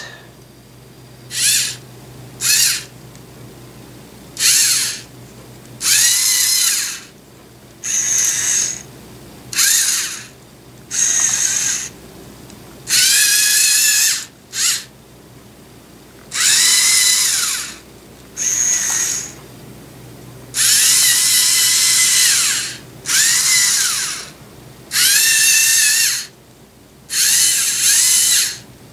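Electric servo motors of a LEGO Mindstorms EV3 GRIPP3R robot whining in about fifteen short bursts as it is driven by infrared remote, turning on its tracks and working its claws. Each burst lasts from under a second to about two seconds, with the pitch rising as the motor starts and falling as it stops.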